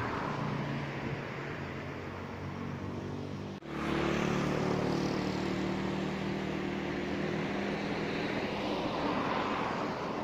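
A motor engine runs steadily under a wash of outdoor noise. The sound breaks off abruptly about three and a half seconds in and comes back louder.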